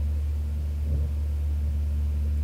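Steady low hum of constant background noise, with no other sound standing out.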